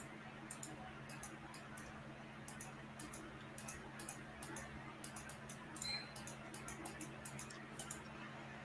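Faint computer mouse clicks in quick, irregular runs, the sound of points being placed one after another while digitizing an embroidery outline, over a faint steady low hum.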